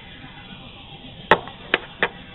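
Two sharp knocks, about half a second apart, over the faint fading ring of guitar notes.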